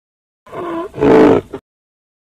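Rhinoceros call played as a sound effect: a short pitched note followed by a louder, rougher one, about a second in all.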